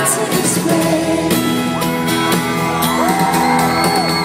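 Rock band playing an acoustic song live, with acoustic guitars under a female lead vocal, heard from among the arena audience.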